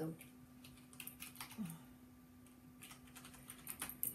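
A few faint, irregular keystrokes and clicks on a computer keyboard, over a low, steady hum.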